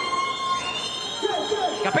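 End-of-round buzzer sounding in an MMA cage: a steady electronic tone that steps up in pitch about half a second in, holds, and cuts off suddenly near the end. It marks the close of the second round.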